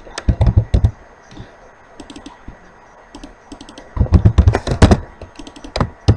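Typing on a computer keyboard in quick bursts: a short run of keystrokes about half a second in, then a longer, louder run from about four to five seconds in, with a few single keystrokes between.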